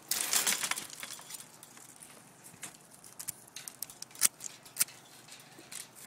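Hand pruning shears cutting grapevine canes, with the rustle of the cut wood being handled. There is a dense burst of rustling and clicks in the first second, then scattered sharp clicks, the loudest about four seconds in.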